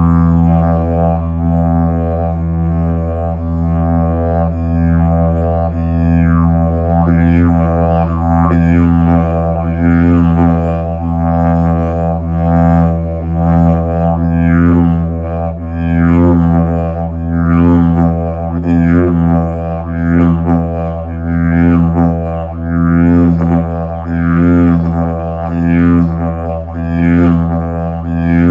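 Hemp didgeridoo in the key of E sounding an unbroken low drone. Rhythmic sweeps in its overtones, about one a second, give it a pulsing beat.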